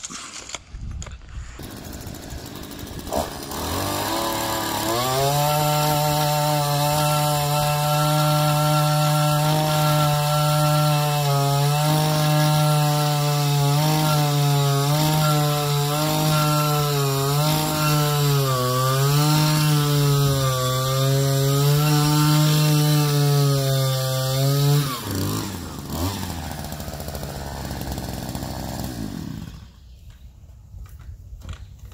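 Gas-powered two-stroke post hole auger drilling a post hole in soil. The engine revs up a few seconds in and runs at high speed, its pitch dipping and recovering again and again as the bit works under load. About 25 seconds in it drops back to idle, then cuts off near the end.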